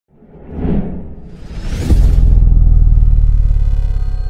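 Cinematic sci-fi intro sound design: two whooshes swell up one after the other. About two seconds in, a deep boom hits and carries on as a loud, steady low rumbling drone, with held electronic tones coming in over it near the end.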